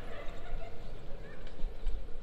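Outdoor street ambience on a walk: a steady low rumble, with a faint pitched call in the first half second.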